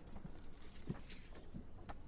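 Faint room sound with a few soft, short knocks, one about a second in and two more near the end.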